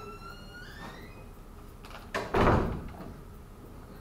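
A squeak rising in pitch for about a second, then about two seconds in a sudden loud thump with a rustling tail lasting under a second.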